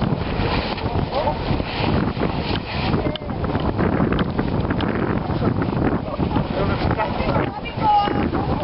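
Wind buffeting the microphone, with indistinct voices and shouts of people around the icy water.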